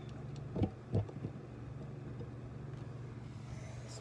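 Camera being handled close against the body: two soft knocks about half a second and a second in, over a steady low hum.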